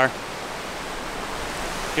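Steady rush of a glacial meltwater stream running over rocks.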